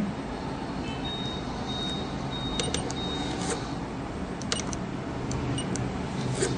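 Steady background hum, with a few short, faint high-pitched tones about a second in and scattered light clicks later.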